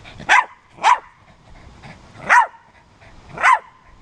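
A dog barking four times in short, loud barks, spaced between half a second and a second and a half apart.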